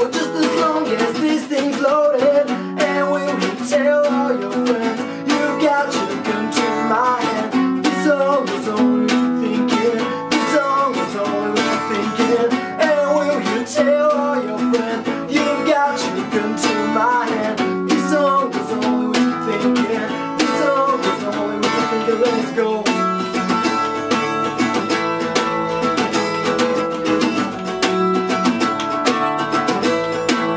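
Strummed steel-string acoustic guitar, a black cutaway with a capo, played continuously, with a man singing over it for much of the time.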